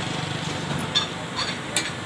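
A small engine running with a low, steady hum that fades after about half a second, with a few sharp clicks over it.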